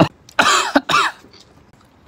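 A person coughing twice in quick succession, two short hoarse coughs, in a small room.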